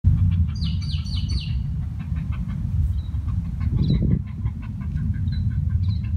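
Wind noise on the microphone throughout, with a bird chirping over it: four quick falling notes in the first two seconds, then scattered fainter chirps.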